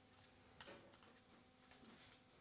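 Near silence: quiet room tone with a faint steady hum and two faint clicks, during a minute of silence.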